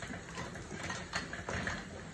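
Elliptical cross trainer working under a child's strides: a steady mechanical hum from the flywheel with a short knock or squeak repeating about every half second as the pedals go round.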